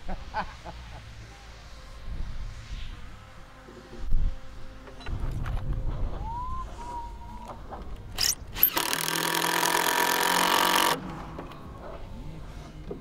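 Cordless drill driving a screw into a wooden board: the motor runs steadily for about two seconds near the end and stops abruptly, after a pair of sharp clicks. A brief rising whine comes a little past the middle, with scattered knocks and handling bumps earlier.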